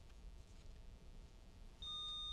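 Near silence, then near the end a quiz-bowl lockout buzzer sounds a steady high-pitched electronic beep as a player buzzes in.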